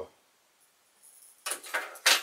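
Near silence, then about one and a half seconds in a short clatter of hard plastic wobbler lures being set down on a wooden tabletop.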